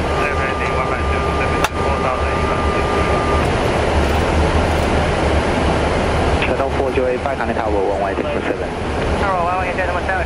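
Boeing 777-300ER flight deck in flight: a steady low rumble of airflow and engines. Over it are muffled voices, a thin steady tone for the first three seconds or so, and a single sharp click a little under two seconds in.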